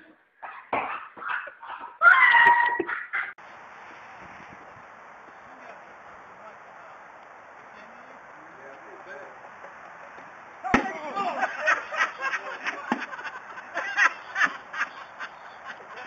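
A sudden sharp bang as a wooden prank box snaps open, followed at once by loud, pulsing laughter and shouting from the startled group.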